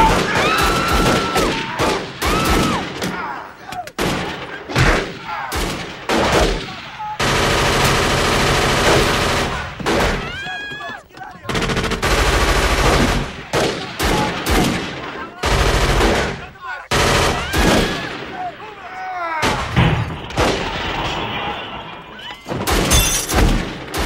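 Movie gunfight: repeated gunshots and two long bursts of automatic fire, with a person yelling near the start and again about ten seconds in.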